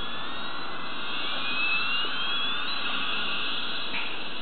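Toy airplane's electronic jet-engine sound effect: a steady jet hiss with a whine that climbs in pitch over about three seconds, then cuts off abruptly near the end.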